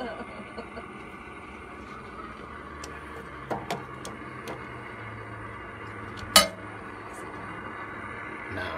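A steady low hum with a few faint clicks, then one sharp click about six and a half seconds in.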